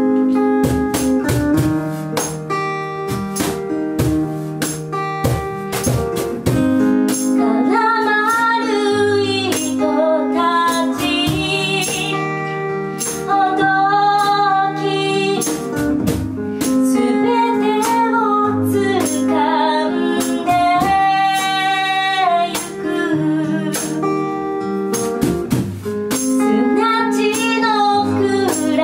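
Live acoustic pop ballad on keyboard piano and strummed acoustic guitar. A woman's singing voice comes in about seven or eight seconds in and carries the melody over the steady strumming.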